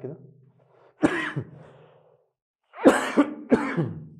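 A man coughing: one cough about a second in, then two more in quick succession near the end.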